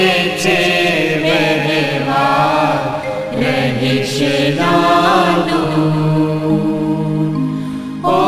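A Gujarati devotional hymn being sung, its melody drawn out in long ornamented notes between lyric lines, with a long held low note in the last few seconds.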